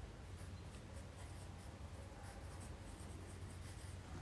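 Pencil writing a word by hand on a textbook page: faint, short scratching strokes.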